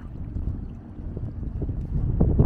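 Wind rumbling on the microphone, with the wash of a fast-flowing river.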